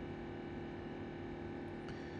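Room tone: a steady low electrical hum with faint hiss, with no other events.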